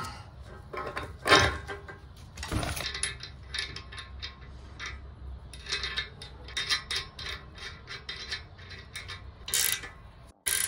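Ratcheting wrench clicking in quick runs as a caster's mounting nut is tightened onto a steel dolly frame, with a few louder knocks of metal parts, the first about a second in.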